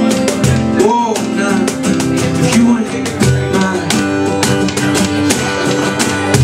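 Acoustic guitar strummed steadily, with a male voice singing over it in sliding, wordless-sounding lines.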